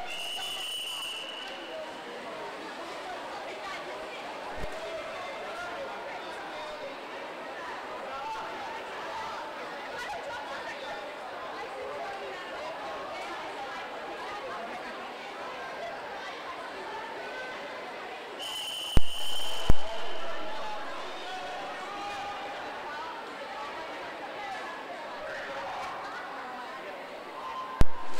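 Crowd chatter echoing in an indoor pool hall during a backstroke start. About two-thirds through, a high steady tone sounds for about a second with two sharp clicks, and another sharp click comes right at the end.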